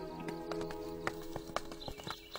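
Background score of sustained held notes, with a run of light, fairly regular clicks and knocks a few times a second over it.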